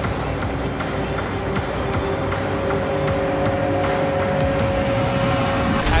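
A steady low vehicle rumble, with background music holding a long sustained note over it from about halfway through.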